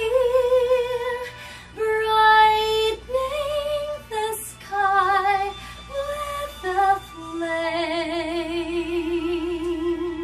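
A woman singing a slow ballad, phrase by phrase, in held notes with vibrato, ending on one long note with wide vibrato from about seven seconds in.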